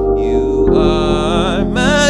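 A man singing a worship song with vibrato, accompanying himself on an electronic keyboard with held chords; the chord changes and the voice enters about two-thirds of a second in.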